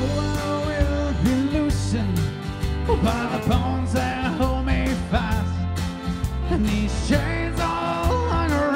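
Celtic rock band playing live: fiddle, acoustic and electric guitars, bass guitar and drum kit, with a steady beat.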